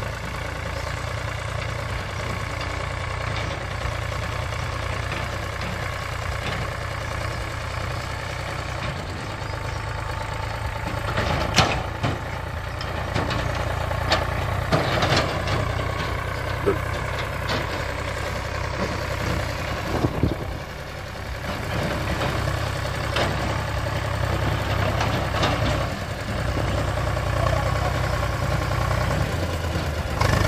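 Diesel farm tractor engine running steadily as it drives across a ploughed field towing a trailer, with a few sharp knocks about a third of the way in and again about two thirds of the way in.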